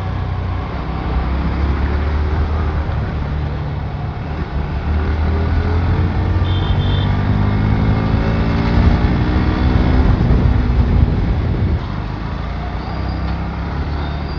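Bajaj Pulsar NS125's single-cylinder engine running under the rider, its pitch rising steadily as the bike accelerates through the middle of the stretch, then dropping back to a lower, quieter run near the end.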